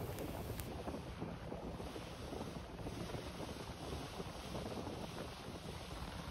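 Wind buffeting the microphone and water rushing past the hull of a small motorboat under way, over a low steady drone from its engine.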